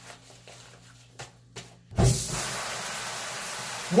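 Shower running: a steady hiss of spraying water that starts suddenly about halfway through, after a few faint clicks.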